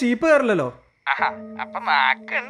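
Speech: a man's voice in a drawn-out, sing-song tone whose pitch falls away a little before a second in, then, after a short pause, more speech over soft background music with held notes.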